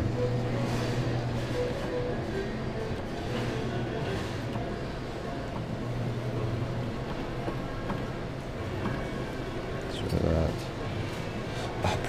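Busy arcade ambience: a steady din of background voices mixed with electronic game-machine music, with a short voice-like sound about ten seconds in.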